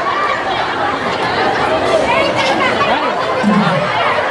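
A crowd of people talking and calling out at once: an overlapping babble of many voices, with no one speaker standing out.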